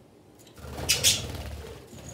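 A budgerigar's wings flapping, two quick whooshes about a second in, as it takes off from its perch, over a low rumble from the handheld phone being moved.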